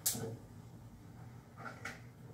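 Quiet kitchen handling sounds: a sharp click or clatter at the start, then two small faint knocks near the end.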